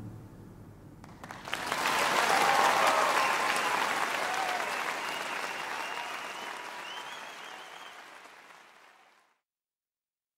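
Concert audience applauding, with some cheering, after the choir's last note dies away. The applause swells about a second and a half in, then fades out and cuts to silence near the end.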